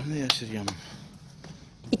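A few brief spoken words with sharp clicks in the first second, then quiet background.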